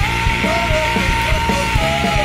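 Rock band playing live: electric guitar, bass guitar and drum kit, with a long held high note over a steady drum beat.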